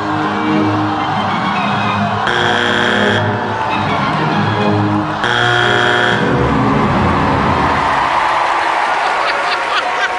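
Backing music for a stage act, cut through twice by a judge's buzzer, each blast about a second long, a couple of seconds and about five seconds in. From about seven seconds the music fades under rising audience noise.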